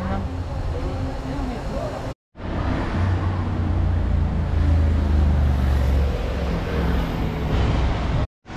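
Road traffic: cars passing with a steady low rumble that swells in the middle, with faint voices. The sound drops out for a moment about two seconds in.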